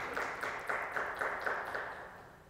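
A small audience applauding, a short round of hand clapping that fades out near the end.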